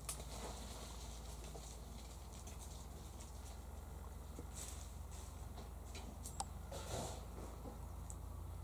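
Australian king parrot feeding on privet berries: faint, sparse clicks and rustles of its beak working the berries and twigs, over a steady low background rumble, with one sharper click about six and a half seconds in.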